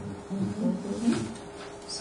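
A quiet, low voice murmuring briefly in a pause in the talk, over a faint steady hum.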